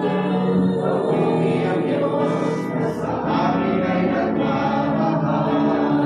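Gospel worship song: a woman sings lead into a microphone and several voices sing along in held notes, over electric guitar.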